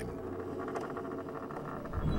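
Faint creaking and rubbing of a hemp rope under strain as a heavy wooden boarding bridge is hauled up its mast by hand.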